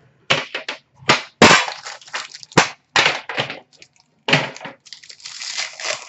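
Plastic wrapper of a hockey card pack being handled and torn open: a run of sharp crackles and rustles, several separate bursts about half a second to a second apart.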